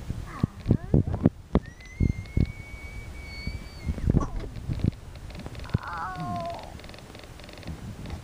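Toys being handled close to the microphone: a run of knocks and clicks, a thin steady high tone lasting about two seconds, and a short high call that falls in pitch about six seconds in.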